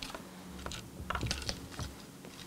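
Light, irregular clicks and taps of fingers and nails handling a small plastic replica camera strapped to a plush bear, with a few soft bumps against a wooden tabletop. The clicks cluster about a second in.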